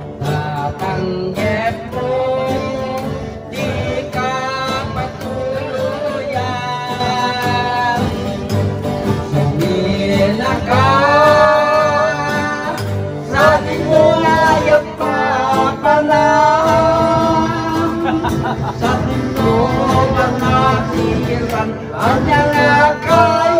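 A small guitar string band strumming while a man sings into a microphone, his voice amplified. The singing grows louder about halfway through.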